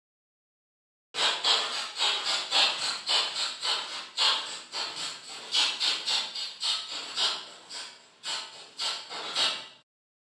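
A fabric tag on a scarf being scratched, recorded on an earbuds microphone: rhythmic scratchy strokes played to a 110 bpm click, several a second, starting about a second in. The clip is cleaned up with a noise suppressor and has a little reverb added.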